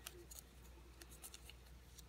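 Faint, scattered little ticks and crinkles of a small paper slip being folded and handled between the fingers.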